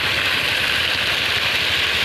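Park fountain's water jets splashing in a steady hiss, with a low rumble underneath.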